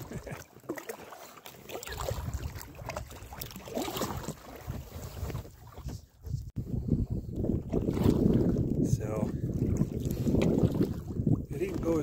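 Wind on the microphone and water splashing around an inflatable packraft as it is paddled across a lake. The wind gusts louder from about two-thirds of the way in.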